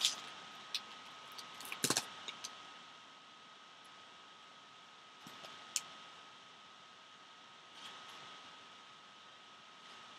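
Trading cards and a torn foil pack wrapper being handled: a few crinkles and sharp snaps in the first couple of seconds, the loudest about two seconds in. After that only occasional soft clicks of card edges over a steady faint hiss with a thin constant tone.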